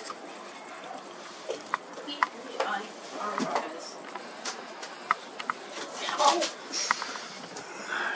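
Summer night ambience through an open window: a steady high chirring of crickets, with a few short sharp clicks and a faint voice about six seconds in.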